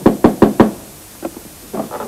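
Knocking on a wooden door: a quick run of four or five raps in the first second, then a couple of fainter taps.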